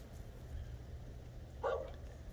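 A fox gives one short call about one and a half seconds in, over a low steady background rumble.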